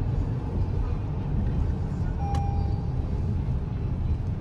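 Inside a moving car's cabin on a rain-wet road: a steady low rumble of tyre and engine noise. A short beep sounds about two seconds in.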